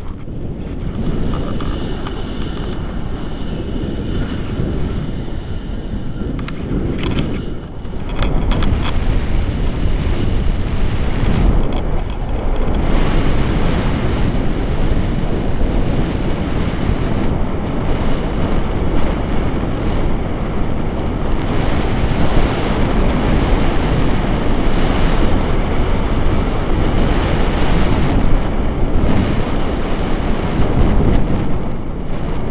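Wind rushing and buffeting over the action camera's microphone as a tandem paraglider flies, a steady low noise that grows louder about eight seconds in.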